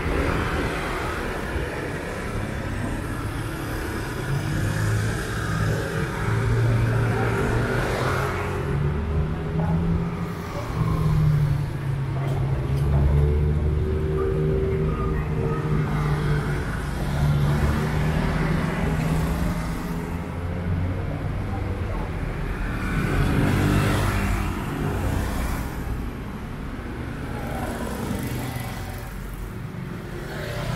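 Street traffic: car and motorbike engines running and passing, a steady hum that swells and fades as vehicles go by, with a louder pass about three-quarters of the way through.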